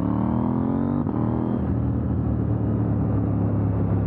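KTM 890 Duke R's 889 cc parallel-twin engine, loud through a full titanium exhaust system, under way: the revs climb for about a second, drop sharply with an upshift, then pull on steadily at lower revs.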